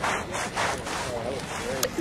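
Sidewalk chalk being rubbed and blended into concrete pavement, in rhythmic back-and-forth scrubbing strokes of about two a second.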